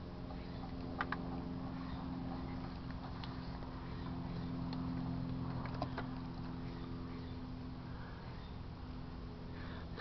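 A steady low mechanical hum with even pitch throughout, with a few faint clicks scattered through it.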